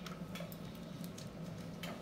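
A few faint clicks from handling a rubber tourniquet band as it is put on the arm, over a steady low room hum.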